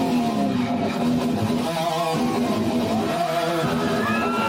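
Live heavy metal: heavily distorted electric guitar and bass playing a riff at a steady, loud level.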